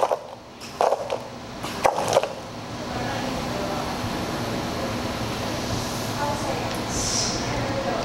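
A touchscreen flavored-water dispenser pouring sparkling water into a cup: a steady hiss of running water that starts about two and a half seconds in and holds even, over a faint steady machine hum. Two short sounds come just before it.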